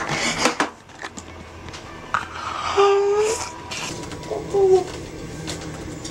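A few sharp knocks or clicks at the start, then a man's two short, high whimpers about three and four and a half seconds in, as he strains in distress.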